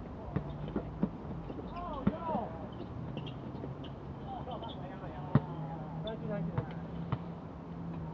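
A basketball bouncing irregularly on an outdoor court, heard from a distance as sharp knocks, the loudest about five seconds in, with players' voices calling out and a steady low hum underneath.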